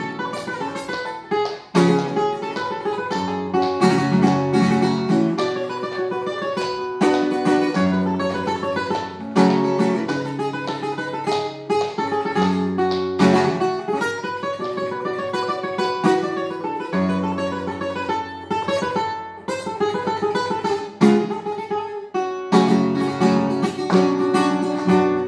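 Solo classical guitar played with the fingers: a plucked melody over held bass notes, broken by several sharp chord strikes.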